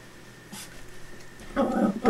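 Soft, faint licking from a longhaired miniature dachshund puppy grooming himself. A person's voice starts near the end.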